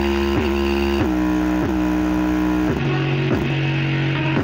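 Bass-heavy music with guitar played loudly through a bare 5-inch woofer driven at high power. The notes are held and step to a new pitch every second or so.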